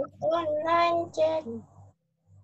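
A high voice singing a short phrase with one long held note. It breaks off about a second and a half in.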